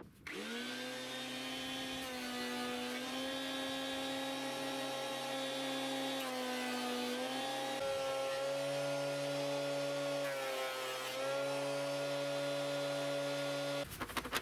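JET jointer-planer running with no wood being fed: its motor and cutterhead come up to speed within the first half-second, then whine steadily with slight dips in pitch. The whine cuts off suddenly just before the end.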